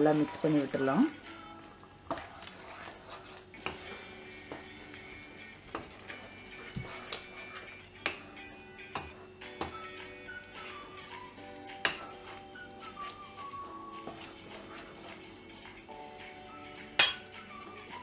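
A wooden spatula stirring and knocking against a non-stick kadai, with scattered light clicks, as ground coconut paste is mixed into a thick gravy. Soft background music with held notes plays throughout, and a few spoken words come in the first second.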